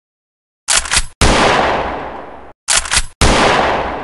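An edited-in intro sound effect, played twice: a quick run of three or four sharp bangs, then one big booming hit whose echo slowly dies away. The first echo is cut off abruptly just before the second run begins.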